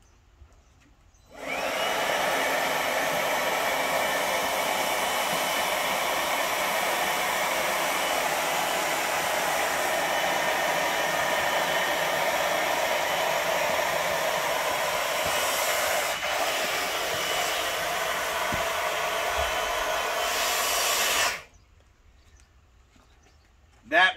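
DeWalt 20-volt cordless leaf blower starting up about a second in with a short rising whine, then running steadily as it blows air through the valve into an inflatable boat's second air chamber. It shuts off abruptly a couple of seconds before the end.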